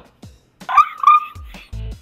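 A small terrier vocalising: two loud, pitched, whining calls about halfway through, then a short low grumble near the end, over background music.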